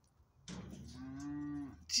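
A cow mooing once: a single steady, low call lasting just over a second.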